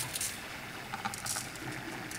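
Faint light clicks and rustling of chunky glitter being scooped from a small plastic cup with a plastic spoon and pressed onto a wet epoxy-coated tumbler, a few ticks near the start and again about a second in.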